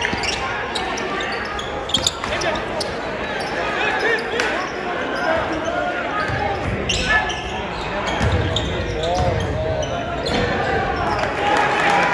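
A basketball bouncing again and again on a hardwood gym floor during live play, with the voices of players and spectators in the gym.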